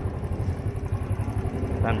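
Motorbike engine running steadily with a low hum as the bike rolls along, heard from on the bike.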